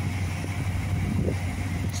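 Dodge Charger R/T's 5.7-litre HEMI V8 idling steadily, a low even drone.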